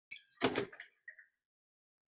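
A single short thump about half a second in, followed by a few faint clicks.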